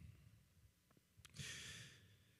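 Near silence, broken about a second and a half in by one short, faint breath of a man into a handheld microphone.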